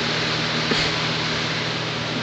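Steady hiss of room background noise with a low hum underneath, and one brief faint sound about three quarters of a second in.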